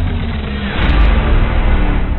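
Station-ident music: deep sustained bass tones with a swelling whoosh that peaks about a second in.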